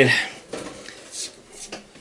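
A few light clicks and knocks of objects being handled.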